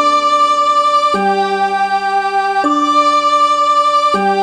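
Slow instrumental background music: sustained, unwavering chords that change to a new chord about every one and a half seconds.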